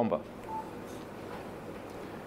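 A pause in a man's preaching, with low room tone and one short, faint electronic beep about half a second in.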